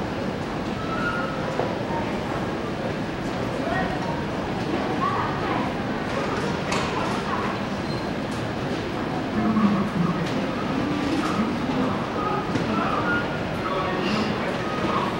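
Busy railway platform ambience: a steady din with scattered voices.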